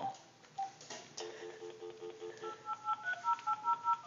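Telephone handset playing its steady dial tone for about a second, then a quick run of touch-tone (DTMF) key beeps, several a second, as a number is dialled.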